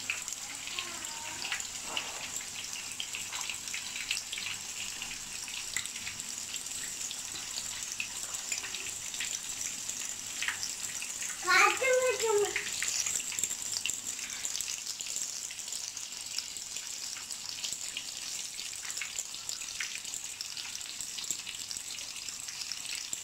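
A masala-coated pomfret (avoli) frying in a pan of hot oil: a steady sizzle with fine crackles and pops. A short voice sounds about halfway through, louder than the sizzle.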